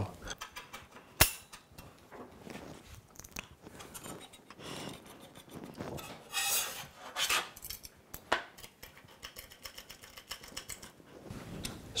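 Small metal parts clinking and tapping as a foot is screwed onto a metal precision triangle with a small hex key driver. A sharp click comes about a second in and another about eight seconds in, with a brief rubbing scrape around six and a half seconds in.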